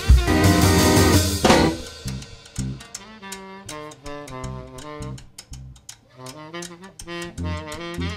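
Live blues band: the full band plays loudly with drums and cymbals for about the first second and a half, then drops to a quiet, sparse passage of wavering saxophone notes over bass and light drum ticks.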